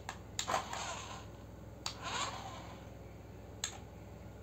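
Small plastic remote-control buttons clicking several times as a battery-powered toy RC car is driven, with two short whirring bursts from the car's small electric motor and wheels on the stone floor, about a second in and again about two seconds in.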